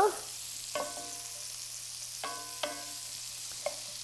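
Diced onions sizzling gently in bacon grease in a cast-iron skillet, stirred with a wooden spoon that knocks against the pan about four times, each knock ringing briefly.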